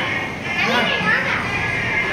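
Children's voices, calling and chattering, over background music with sustained tones.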